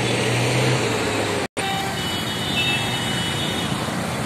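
Busy street traffic: a steady mix of car and motorbike engines with a low engine hum in the first second. The sound cuts out for an instant about one and a half seconds in.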